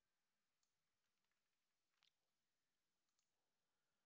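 Near silence, broken by three very faint short clicks, the middle one a little louder.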